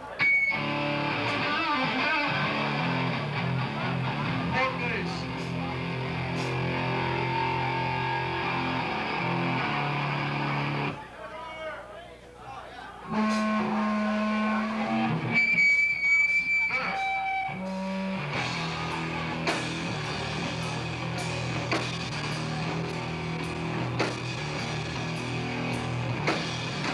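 Live rock band with distorted electric guitars, bass and drums: held, ringing guitar chords for the first part, a short drop in level just before halfway, a high sustained note, then the drums come in with a steady beat under the guitars in the second half.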